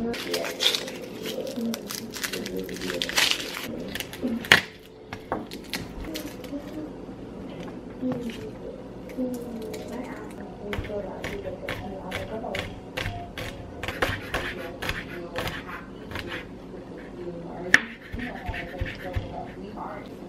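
Chef's knife tapping on a wooden cutting board as garlic is peeled and minced: a string of quick, uneven taps, thickest in the second half. A sharp knock comes about four and a half seconds in and another near the end. Faint voices or music run underneath.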